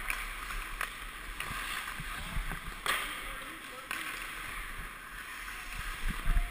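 Ice hockey skates carving and scraping on the rink ice, a steady hiss as heard from a helmet-mounted camera, with a few sharp clacks scattered through it.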